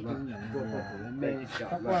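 A man's drawn-out, chant-like voice, with a rooster crowing.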